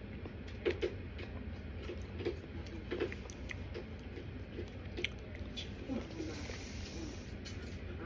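Chewing a mouthful of dry cornstarch: soft, irregular squishy crunches and small mouth clicks, a few at a time, over a low steady hum.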